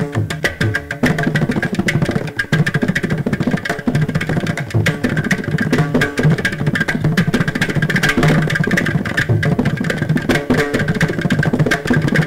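Carnatic music with a mridangam playing fast, dense strokes, plucked strings sounding behind it.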